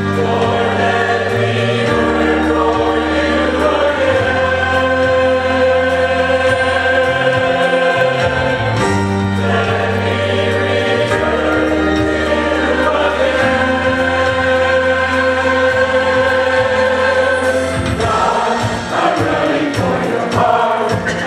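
Mixed church choir of men and women singing a gospel song in held, sustained notes over an accompaniment with a steady low bass line.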